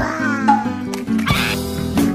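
Background music with a steady beat of held notes, with a short falling, whine-like cry near the start and a brief swish about halfway through.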